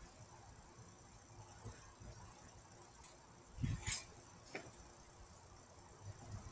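A single thump with a sharp click about three and a half seconds in, then a second click half a second later: a person landing on a backyard trampoline.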